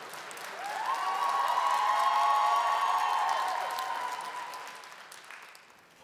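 Live audience applauding after a joke, swelling about a second in and dying away toward the end.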